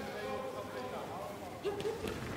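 Faint voices in the background over low room noise, with a short burst of voice near the end.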